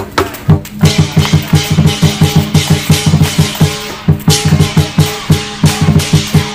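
Lion-dance percussion music with a fast, steady drum beat of about four strikes a second, under held tones and occasional bright crashes.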